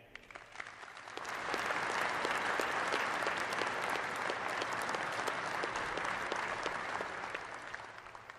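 Audience applauding: many hands clapping, swelling over the first second or two, holding steady, then fading near the end.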